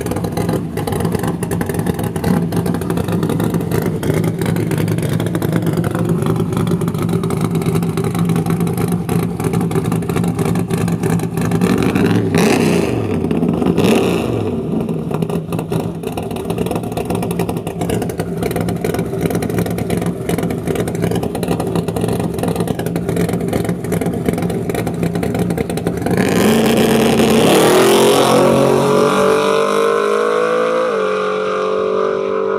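Nitrous-equipped square-body Chevrolet Silverado drag truck's engine idling steadily, with a couple of brief changes a little before halfway. Near the end it launches at full throttle, the engine pitch climbing fast and loud.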